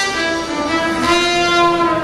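Live jazz-funk band music: the horns, trumpet with saxophone, hold long sustained notes, with little drumming or bass underneath.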